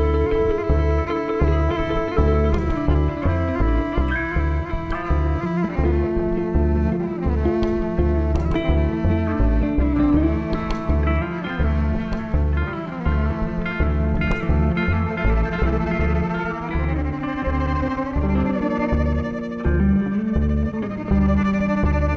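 Instrumental break of a live acoustic-roots trio: bowed violin over plucked upright bass and electric guitar, with a steady pulse of low bass notes.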